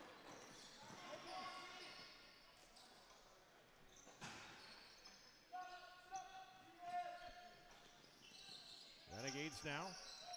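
Faint arena sound of an indoor box lacrosse game: distant voices and a single sharp knock about four seconds in.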